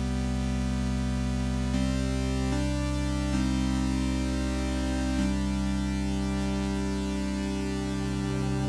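Sustained synthesizer drone chords from the LABS Obsolete Machines 'Transcend' patch, played on a keyboard with the dynamics fader down for a dry, upfront sound. The held chord shifts to new notes a few times.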